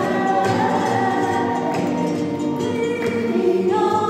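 Live flamenco villancico (Spanish Christmas carol): voices singing long held notes, with a choir-like sound from the backing chorus.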